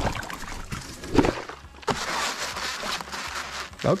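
Pond water splashing and sloshing around a floating stack of rigid foam insulation boards as a person climbs onto it, with a brief louder splash about a second in.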